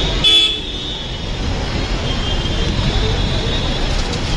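Busy street traffic din with a short car horn toot about a quarter second in and fainter horn toots later.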